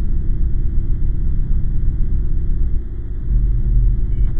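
Deep, steady low rumble of a dark ambient drone in a horror soundtrack. It dips briefly about three seconds in, then swells deeper and louder toward the end.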